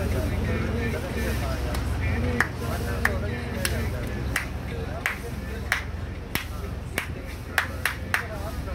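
A boat's engine running with a steady low hum under indistinct voices. From about two seconds in, sharp clicks come at an even pace, roughly three every two seconds.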